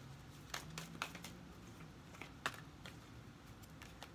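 Tarot cards being handled in the hands: a few soft, scattered clicks and taps of card stock, the sharpest about two and a half seconds in.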